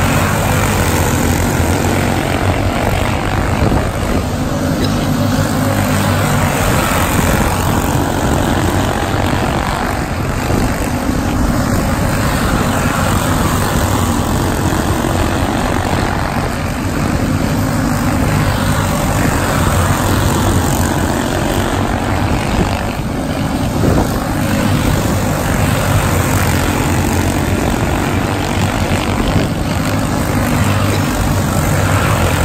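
A pack of quarter midget race cars lapping a small oval, their small single-cylinder engines buzzing together. The sound swells and fades every few seconds as the cars come around.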